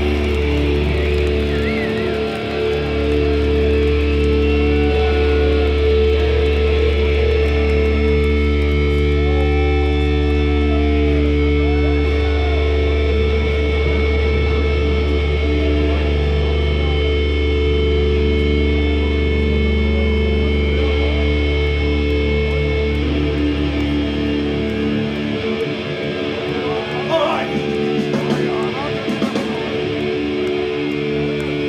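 Live thrash metal band's amplified electric guitars and bass holding a long, steady, droning chord as a song winds down, with the crowd shouting. The lowest note drops out near the end.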